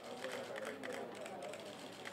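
Indistinct voices talking, with a scatter of quick camera shutter clicks.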